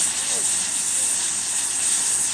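Steady hiss of a lit gas torch left burning unattended, its flame against a pile of cardboard.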